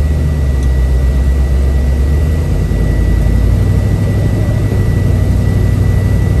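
The 1967 Camaro's 350 V8 running through its dual exhaust while the car drives along, heard from inside the cabin. The deep engine rumble is steady, and its low note rises a little about halfway through.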